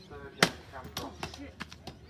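Axes chopping into logs in an underhand woodchop, with competitors standing on the blocks and swinging down between their feet. One loud, sharp axe strike comes about half a second in, followed by several lighter strikes from the other choppers.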